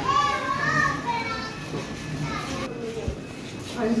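Children's voices, with a high-pitched child's call in the first second and a half, then quieter background chatter.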